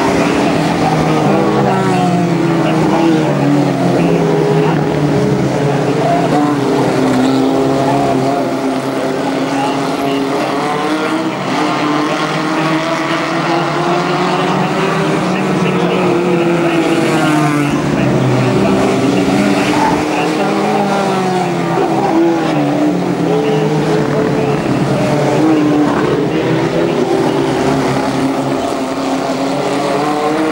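A pack of Heritage F2 stock cars racing round an oval, several engines revving up and down as they lap past.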